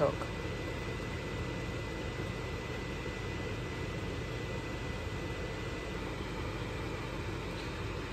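Steady fan-like hum and hiss with a faint constant high whine.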